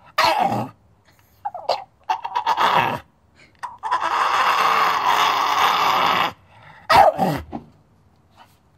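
Staffordshire Bull Terrier "talking": a run of short vocal calls, then one long drawn-out call of about two and a half seconds, then a last short call near the end.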